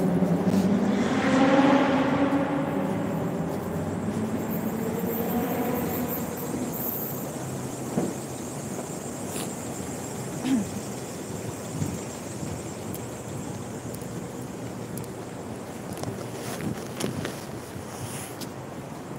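A motor vehicle passing close on a city street: its engine hum is loudest about two seconds in and fades away over the next few seconds. Steady traffic noise follows, with a few faint knocks.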